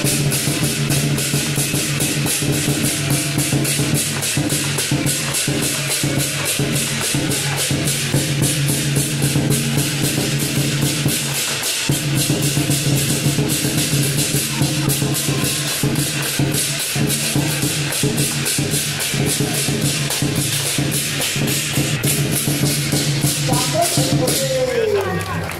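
Lion dance percussion: a large drum, clashing cymbals and gong played together in a fast, steady beat, with a brief break near the middle.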